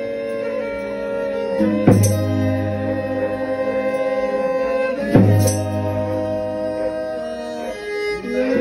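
Folia de Reis folk music: a fiddle bowing held notes over a strummed viola, with a deep drum struck twice, about two and five seconds in.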